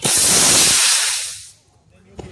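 F50 model rocket motor firing at liftoff: a sudden loud rushing hiss that holds for about a second, then fades away over another half second as the rocket climbs out of earshot.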